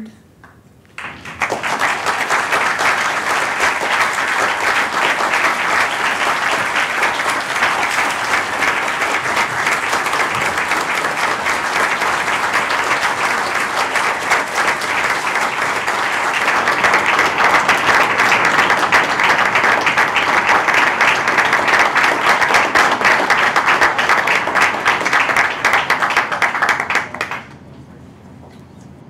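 Audience applauding: many hands clapping, starting about a second in, swelling a little in the second half and stopping abruptly just before the end.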